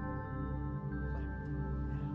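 Ambient new-age meditation music: layered, sustained synth tones held over a steady low drone, the binaural-beat bed of a guided meditation.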